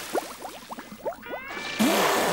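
Cartoon water sound effects: a quick run of rising bubbling blips as a character goes under the water, then a gushing spurt near the end as he surfaces spouting water from his mouth, with held music tones behind.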